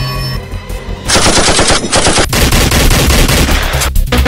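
Automatic gunfire: a loud burst starts about a second in and runs on as a rapid string of shots.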